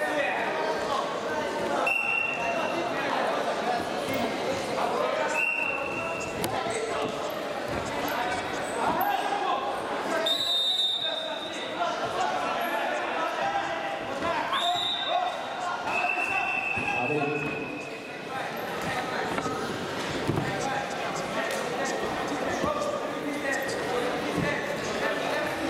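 Freestyle wrestling bout in a large echoing sports hall: background voices around the hall, scattered thuds of the wrestlers on the mat, and a few short, high-pitched tones at two different pitches.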